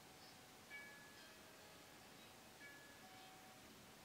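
Very faint meditation background music in a pause between spoken lines: a few soft, sustained chime-like notes, one after another, over near silence.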